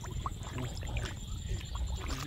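Hands squelching and splashing through shallow muddy water and mud while digging for clams and snails, with scattered small wet clicks.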